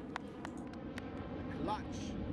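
Quiet outdoor background noise with a few faint, sharp clicks in the first second. Near the end a brief faint voice is heard.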